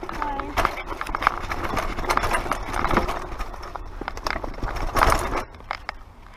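Mountain bike rolling over a rocky dirt trail: tyres crunching on loose stones and the bike rattling in a rapid, uneven run of knocks and clicks, with a louder clatter about five seconds in before it quietens.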